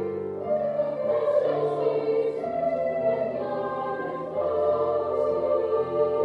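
High school choir singing held chords, the harmony shifting about half a second in and again past the four-second mark, with a few sung 's' consonants standing out.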